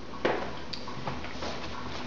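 Kitchen tap running steadily for hand washing, coming on with a click about a quarter second in.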